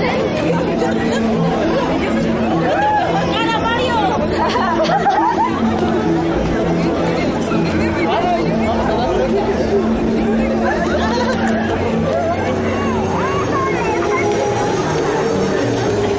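Overlapping chatter of many young people's voices, with music playing behind them with steady held notes.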